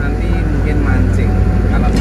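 Steady low rumble of a moving car heard inside its cabin, with a voice singing over it.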